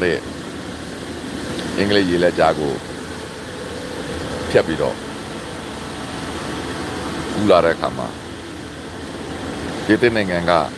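A man speaking in short phrases with long pauses between them, over a steady background noise.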